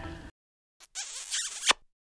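Logo sound effect for an end title card: a click, then a short swish under a second long that ends in a sharp hit.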